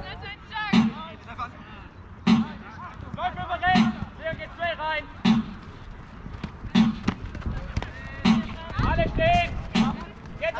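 A Jugger timekeeper's drum beating out the stones, one beat about every second and a half, seven beats in all, with players shouting on the field between the beats.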